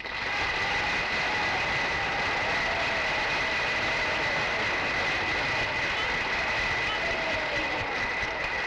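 Studio audience applauding right after the piano performance ends: a dense, even clapping noise that starts abruptly as the music stops, with a steady high-pitched whine running through the old recording.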